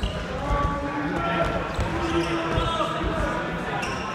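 Futsal ball thumping on a hard sports-hall floor as it is kicked and bounced several times, with players calling out to each other.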